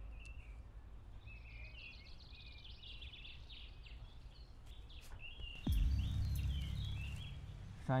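Forest birds chirping and singing over a low outdoor rumble. About two-thirds of the way through, a louder low rumble sets in suddenly and the birds carry on above it.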